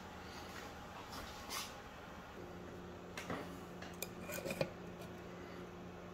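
A glass jar being handled and set down on a hard surface: a few light knocks and clinks, the loudest about four and a half seconds in. A low steady hum starts a little over two seconds in.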